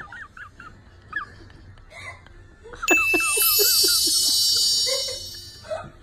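A bright, bell-like ringing starts suddenly about three seconds in and holds for about two seconds before fading. Before it comes a run of short, high chirps.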